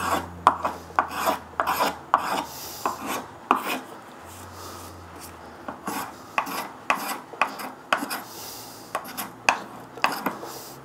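A hand spokeshave taking short cuts along the edge of a curved timber cutout, easing the sharp edges. It makes quick scraping strokes, about two a second, with a short pause about four seconds in.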